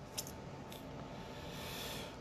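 Faint handling noise of a finger on a smartphone held close to its microphone: two light ticks in the first second, then a soft brushing hiss that grows slightly toward the end.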